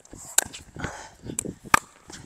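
Pickleball rally: two sharp pops of a paddle hitting the plastic ball, about a second and a half apart, with quieter movement between.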